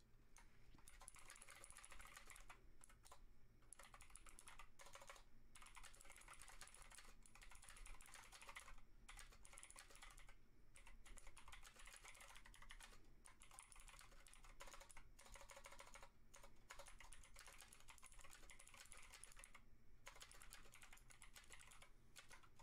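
Faint typing on a computer keyboard: runs of rapid keystrokes broken by short pauses.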